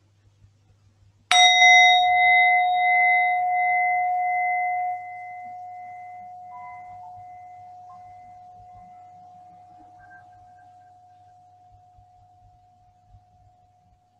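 A singing bowl struck once about a second in, ringing with one clear tone and a few higher overtones. The overtones die away within a few seconds, while the main tone fades slowly and is still faintly ringing near the end.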